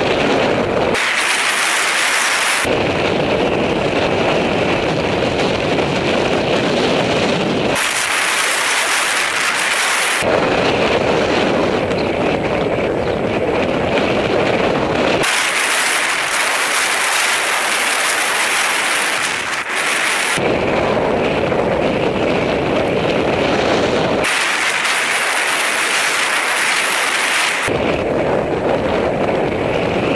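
Wind buffeting on a moving bicycle camera's microphone: a loud, steady rumble that drops away to a thinner hiss four times, for a few seconds each.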